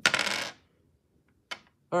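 Dice rolled onto a table, a brief rattling clatter lasting about half a second.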